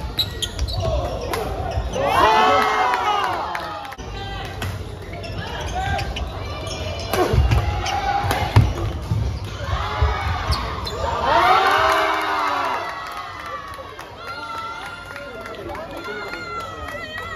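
Badminton doubles rally in a sports hall: sharp racket strikes on the shuttlecock and shoes on the court floor, with two loud bursts of voices about two seconds in and again about eleven seconds in.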